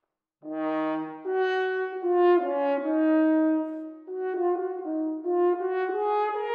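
Unaccompanied French horn starting a new phrase about half a second in after a silent pause, then playing a slow line of held notes that move up and down by small steps, with a brief break about four seconds in.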